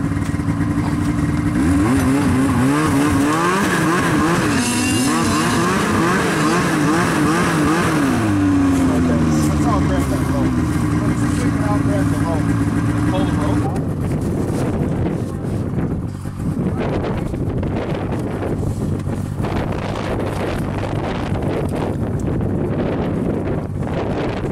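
Two-stroke engine of a stuck 2003 Ski-Doo MX Z snowmobile revving up and down repeatedly as its track spins in slush, trying to drive out. About 14 seconds in, the revving drops away, leaving a noisy rush like wind on the microphone.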